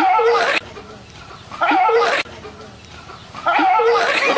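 A dog barking in three outbursts, each about half a second long and spaced about two seconds apart.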